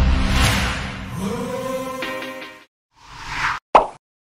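Background music that stops about two and a half seconds in. It is followed by a whoosh sound effect that builds and cuts off, then one short pop as a logo card appears.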